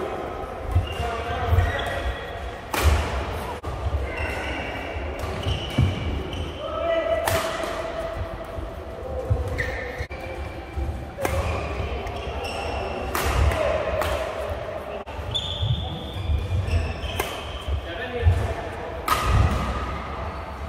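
Badminton rally: sharp cracks of rackets striking the shuttlecock at irregular intervals, with dull thuds of players' feet on the court, echoing in a large hall.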